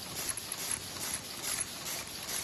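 Koten high-speed paper cup forming machine running at production speed, a continuous mechanical clatter with a regular clack about four times a second.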